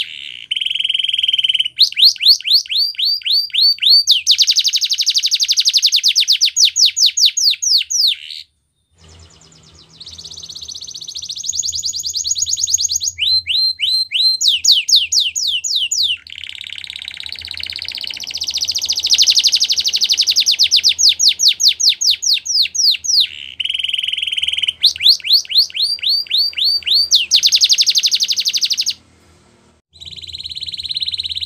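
Domestic canary singing: long rolling trills of rapid, evenly repeated downward-sweeping notes, one trill after another at changing pitch and speed, with a short break about eight seconds in and another near the end.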